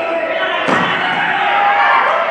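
A single sharp thud from the karate bout about two-thirds of a second in, over the steady chatter of spectators in a large hall.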